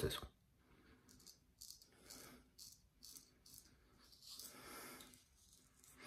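Faint, short scraping strokes of an Economy Supply 800 straight razor cutting lathered stubble on the jaw and neck, about half a dozen quick passes, then a longer, softer stroke near the end.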